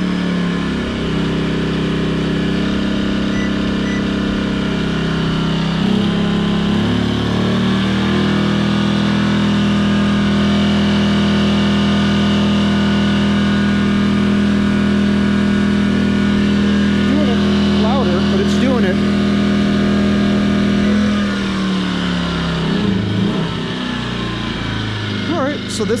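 Firman W2000i inverter generator's engine running under the load of a 1500-watt space heater. Its speed steps up a few seconds in, holds steady for a long stretch, then slows back down near the end.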